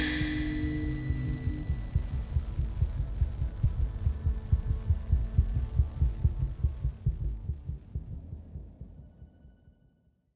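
Closing soundtrack: a low, rapid throbbing pulse with a hum beneath it. Sustained tones and a high shimmer from the music die away in the first second or two, and the pulse then fades steadily to silence by the end.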